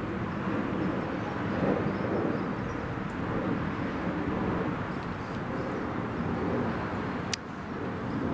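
Steady outdoor background noise with a distant engine drone, with one sharp click near the end.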